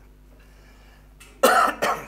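A man coughs twice into his hand, close in front of a bank of microphones, about a second and a half in.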